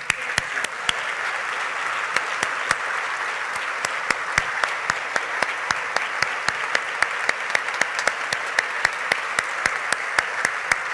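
A large audience applauding, breaking out at once and holding steady, with individual sharp claps standing out above the dense wash of clapping.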